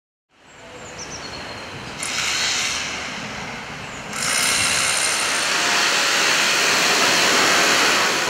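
Steady background din of a building site under construction, a noise of machinery and work with no clear rhythm. It gets louder in steps, about two seconds in and again about four seconds in.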